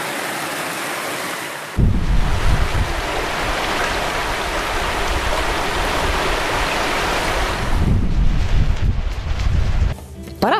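Steady rush of a stream pouring over rocks, with a deep low rumble joining in about two seconds in.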